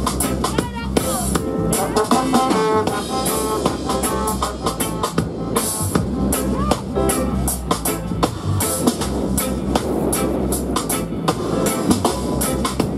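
Live reggae dub band playing: drum kit and electric bass keep a steady beat under guitar and keyboard, with a melodic line over the top in the first few seconds and again about halfway through.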